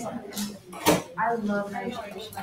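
A single sharp clack of a hard object about a second in, with indistinct voices in the room.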